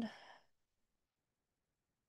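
A woman's spoken word trailing off in the first half-second, then near silence.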